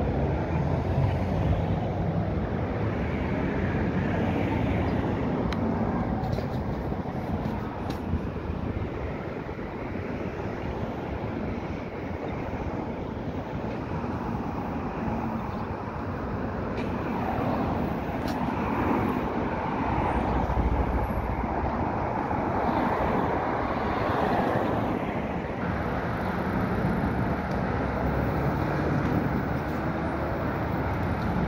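Steady city street traffic noise from passing cars, with gusts of wind rumbling on the phone's microphone now and then.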